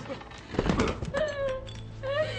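A person crying: a gasping sob about half a second in, then a pitched whimper that falls in pitch.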